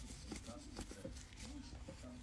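Faint, low voice in the background over a steady low room hum, with a few soft ticks.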